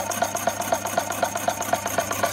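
Electric power hacksaw running and cutting a metal bar. There is a steady motor hum, and the blade strokes back and forth about five times a second.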